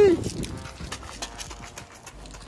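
Quick, rhythmic running footsteps crunching on a gravel path, fading as they go.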